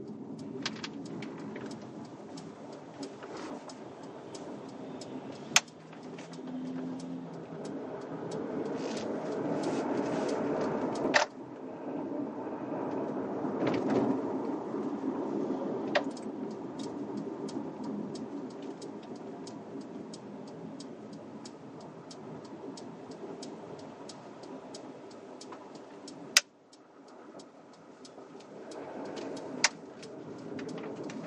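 Inside a car's cabin: steady road and tyre noise with the engine's hum while driving at around 20–25 mph. The noise swells for a few seconds in the middle, with a few sharp clicks, and drops suddenly near the end.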